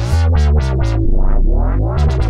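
Dubstep-style synthesizer wobble bass playing: a deep, loud bass note whose upper tones open and close a few times a second, giving a rhythmic wah-like wobble.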